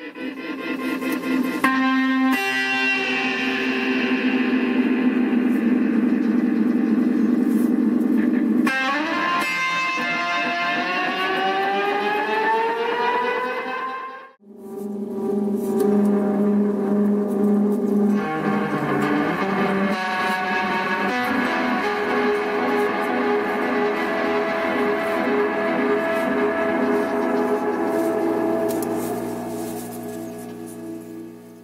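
Electric guitar played through a Multivox Multi Echo tape delay, its notes smeared into repeating tape echoes. From about nine seconds in, the echoed tones glide steadily upward in pitch. The sound then cuts out briefly at about fourteen seconds before the echoing guitar resumes.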